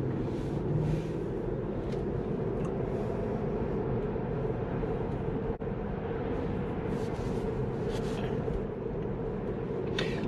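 Steady road and tyre noise inside a Tesla's cabin while driving, with no engine sound. The sound drops out for a moment about halfway through.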